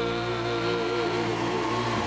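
A live country band ringing out the final held chord of a song: a long sustained note with a slow waver in pitch over a steady low bass note.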